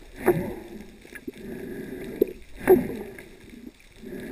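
Muffled underwater water noise picked up by a GoPro in its housing: a steady low drone with two louder swirling surges of water, about two and a half seconds apart, and a few faint ticks.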